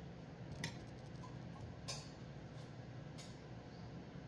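Three light clicks of kitchenware against a drinking glass, over a faint steady low hum.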